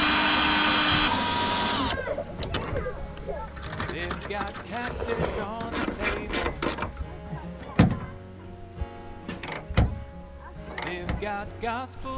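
Two cordless drills running together as they drive bolts into the rack rail, their motors whining steadily; one stops about a second in and the other about two seconds in. After that come quieter handling sounds with two sharp knocks, under background music and voices.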